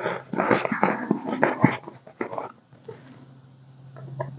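Clear plastic binder envelope crinkling and paper banknotes rustling as bills are handled, busy for the first two and a half seconds and then only a few faint clicks.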